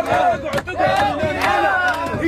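A group of men chanting and singing together, with rhythmic handclaps about twice a second, a celebration chant.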